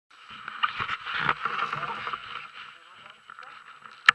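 Rustling and knocking close to the microphone as a textile riding-jacket sleeve brushes past a body-worn camera, with indistinct voices underneath. It is busiest in the first two and a half seconds and quieter after that.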